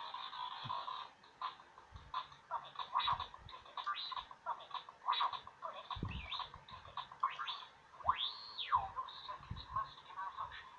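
R2-D2 Bop It toy playing R2-D2 electronic beeps and chirps through its small speaker: a quick string of bleeps, with one long whistle that rises and then falls near the end. A low thump from the toy being handled comes about six seconds in.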